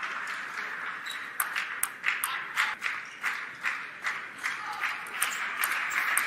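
Table tennis rally: the plastic ball clicking sharply off the rubber bats and the table in a quick, regular rhythm of about two to three clicks a second, starting about a second and a half in, over a steady murmur from the arena crowd.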